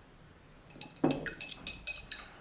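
Painting gear being handled: a quick run of about six or seven light clinks and taps, starting a little under a second in, as brushes and small paint pots are moved about.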